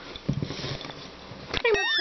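A puppy snuffling quietly, then giving a short high whine that glides down in pitch near the end.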